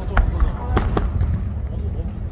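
Aerial fireworks shells bursting overhead: a continuous deep rumble of booms, with a few sharp cracks in the first second.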